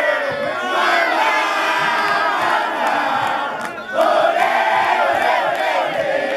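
A crowd of men and boys shouting and cheering together in celebration. The voices dip briefly just before the four-second mark, then surge again.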